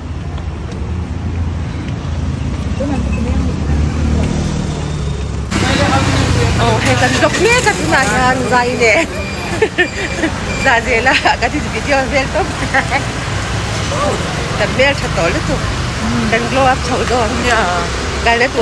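Street traffic: a steady low engine rumble from passing vehicles. About five seconds in, the sound changes abruptly to people talking over the street noise.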